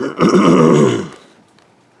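A man's throaty cough, drawn out for about a second and falling in pitch.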